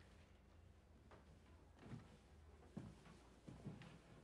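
Near silence: low room tone with a steady hum, and a few faint soft knocks of movement in the room.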